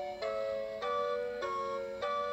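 Animated Ferris wheel decoration playing a tinny electronic tune through its built-in speaker, its chords stepping to new notes about every half second.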